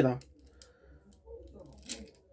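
Plastic transforming toy handled in the hands: faint rubbing, then one short, sharp plastic click near the end.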